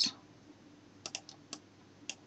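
A few short computer mouse clicks, bunched together about a second in, over quiet room tone.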